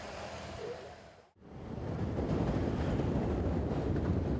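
Low hiss, then a brief dropout to silence about a second in, after which a louder, steady rush of wind noise and low rumble follows, as from a microphone on a vehicle travelling with a pack of road cyclists.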